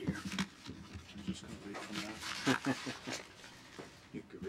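Low murmured voices off the microphone, with shuffling, paper rustling and a few soft knocks at a lectern as people move around it.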